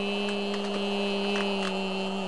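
A person humming one steady, wordless low note, held without a break. Light scattered clicks and rubbing come from hands and face against the page of a book.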